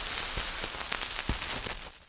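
Surface noise of an 1898 Berliner gramophone disc after the music has ended: steady hiss with scattered clicks and crackles. It drops away shortly before the end and then cuts off.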